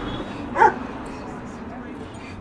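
German Shepherd giving one short, high-pitched yelp about half a second in, over a steady low background hum.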